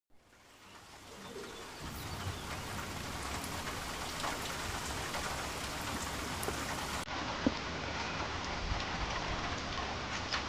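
Steady rain falling, with scattered individual drops pattering. It fades in over the first two seconds, and one sharp drip lands about seven and a half seconds in.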